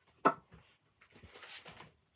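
Sheets of paper rustling as they are handled, after a short sharp sound near the start.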